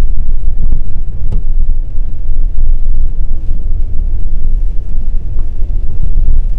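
Car cabin rumble while driving over a snow-covered parking lot: loud, steady low road and engine noise, mostly in the bass, with a faint click a little over a second in.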